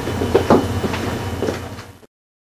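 Steady low room hum with a few short knocks, fading out near the end.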